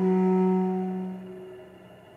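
Solo cello: one low bowed note held for about a second and a half, then dying away into the hall's reverberation.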